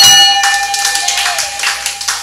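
Brass ship's bell struck once, its loud, steady ring fading slowly, with scattered clapping under it.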